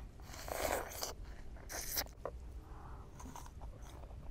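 Biting into and chewing a crisp wax apple (mận), crunching loudly about half a second to a second in and again near two seconds, with smaller crunches after.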